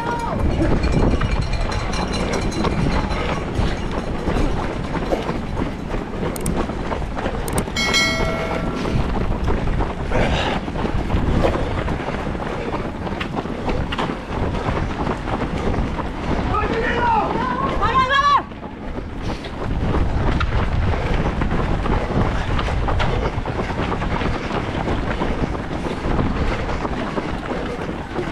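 Steady wind rush on a body-worn action camera's microphone while running in a road race, with the footfalls of the runners around it. A brief steady pitched horn-like tone sounds about eight seconds in, and voices call out around seventeen seconds in.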